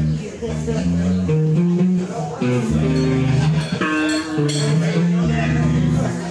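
A live funk band playing an instrumental passage: bass guitar holding low notes that change every half second or so under electric guitar chords.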